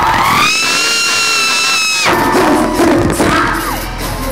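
A concert-goer screaming close to the microphone: a high scream that rises and holds for about a second and a half, then cuts off suddenly. A shorter rising-and-falling whoop follows as the loud hip-hop concert music comes back in.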